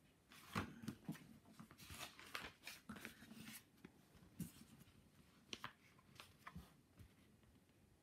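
Paper pages of a book being turned and handled, a faint run of rustling and crackling in the first few seconds, then a few short crackles later.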